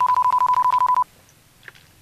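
Mobile phone electronic beep: one steady high tone with a fast, even flutter, lasting about a second and cutting off suddenly.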